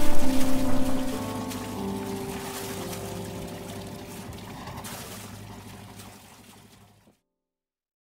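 Cooling water gushing from a yacht's wet exhaust outlet and splashing into the sea, the sign that raw cooling water is going through the diesel engine, with held music chords over it. Both fade out gradually over about six seconds, and the sound stops entirely in the last second.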